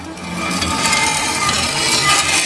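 A sword blade drawn along a whetstone: one long metallic scraping stroke that swells in loudness, with a faint ring in it.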